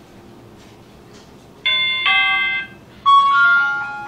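An electronic chime playing a short run of bell-like notes in two bursts: the first, about one and a half seconds in, holds two notes for about a second; the second, about a second later, steps through several notes and rings on as it fades. The chime is much louder than the quiet room around it.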